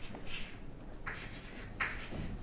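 Chalk scratching on a chalkboard as words are written by hand, in a few short separate strokes.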